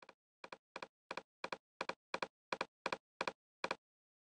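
A run of short clicks at the computer controls, about three a second. Each click is a quick double, like a press and release, with silence between, as the signal generator level is stepped up. The pink noise test signal itself is not heard.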